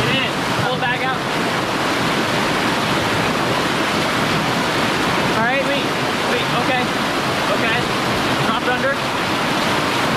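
A whitewater rapid rushing loudly and steadily close to the microphone, water churning and pouring through a narrow slot between boulders.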